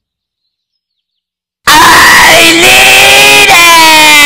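After a second and a half of silence, a cartoon voice suddenly screams at full volume, heavily distorted and clipped. The pitch rises, then slowly sinks through the held scream.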